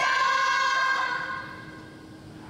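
A group of female cheerleaders yelling a cheer in unison through plastic cone megaphones, the last drawn-out syllable held for about a second and a half and then fading away.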